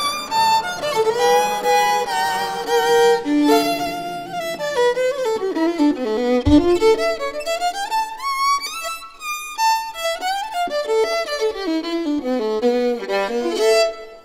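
Violin playing a melody with sliding notes and vibrato, with one brief low thump about halfway through. The piece comes to its close at the very end.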